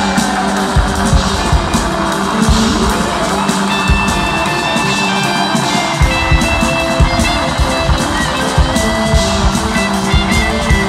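Live rock band playing an instrumental jam on electric guitar, keyboards, bass and drums, taped from the audience with crowd noise faintly underneath. A rising pitch glide comes about three seconds in.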